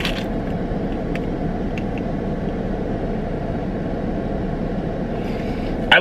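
Steady low rumble inside a parked car's cabin, with a few faint small clicks in the first two seconds.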